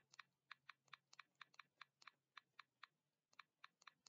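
Faint, quick clicking at a computer, about three to four clicks a second, with a short pause near the end.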